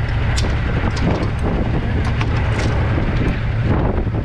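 Recessed latch handle of a semi-trailer's metal door being turned and the door swung open, several short metallic clicks and clanks, over the steady low rumble of an idling truck engine.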